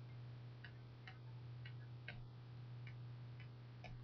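Near silence: faint ticking, about two clicks a second, over a low steady hum.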